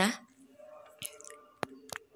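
A short pause in the talking, filled with faint close-up clicks: a soft one about a second in, then two sharp ones near the end.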